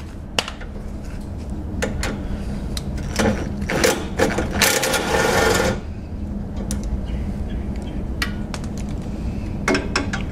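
Hand ratchet clicking in short runs as it works a tight lower radiator support bolt on an extension. A louder, denser rattle of about a second comes near the middle.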